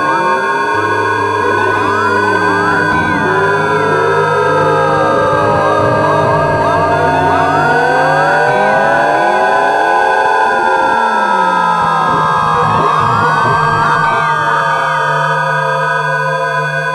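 Experimental electronic music from oscillators. Several steady tones are held while many pitch glides sweep up and down over them, some like slow sirens, and a low hum drops out about halfway through.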